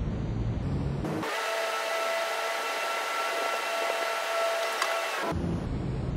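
Steady electrical whir and hum from a parked JR Central 383 series electric train, with several fixed tones over a hiss. The sound changes about a second in and changes back a little after five seconds, when a lower rumble takes over.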